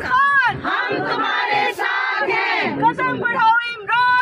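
A group of women chanting protest slogans, loud shouted calls repeated over and over with rising-and-falling pitch.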